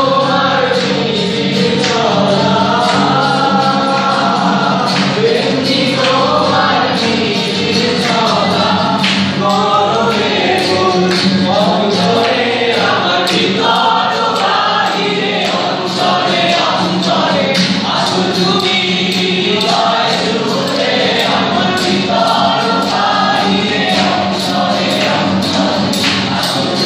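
A mixed group of men and women singing a Bengali song together, accompanied by a harmonium, whose steady drone runs under the voices, and an acoustic guitar.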